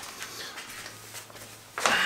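Quiet room tone with a faint steady low hum, then a short, louder scuffing handling noise near the end.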